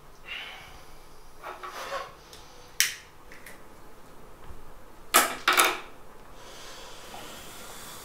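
A man's short, breathy sniffs and exhales, the loudest two coming close together about five seconds in, with a sharp click near three seconds in.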